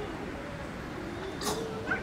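Faint murmur of distant voices in a large hall, with a short high-pitched squeal about one and a half seconds in and a brief squeak just before the end.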